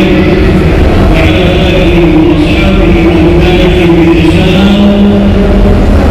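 Loud chanting held on long, slowly shifting notes, over a steady low rumble.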